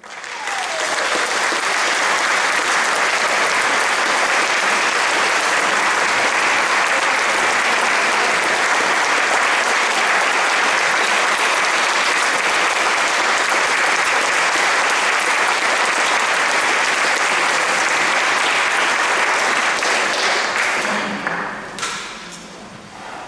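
Audience applause after a brass band piece: a large crowd clapping, steady and dense, dying away near the end.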